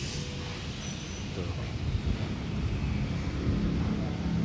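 Low, continuous rumble of a passing road vehicle.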